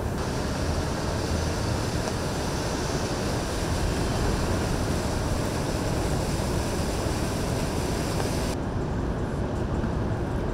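A steady outdoor rumble and hiss with no clear tone, strongest in the lows. The higher hiss drops away about eight and a half seconds in.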